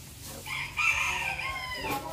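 A rooster crowing once: a single pitched call of about a second and a half, starting about half a second in.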